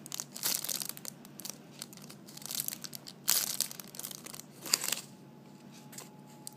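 Clear plastic packaging bag crinkling in irregular bursts as the panda squishy toy inside it is squeezed, with two louder crackles a little past three seconds and just before five seconds, then dying down near the end.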